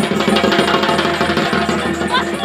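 Live folk music for a dance performance: fast, dense drumming over steady held tones.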